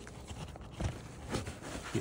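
Soft handling noises as an iPad Pro is slid into the fabric compartment of a Wotancraft Pilot 7L camera sling bag: a few light knocks and rustles, about half a second apart.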